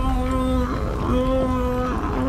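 A man singing a long held note at a steady pitch. It breaks off briefly about halfway through, then is taken up again at the same pitch.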